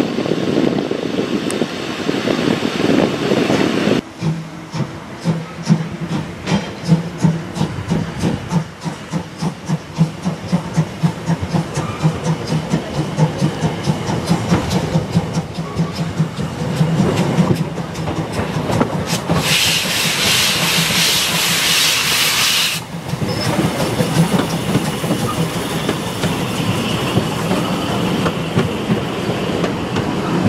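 Narrow-gauge steam tank locomotive working, with rhythmic chuffing and clatter as it moves. About twenty seconds in comes a burst of hissing steam lasting some three seconds, then steadier running noise.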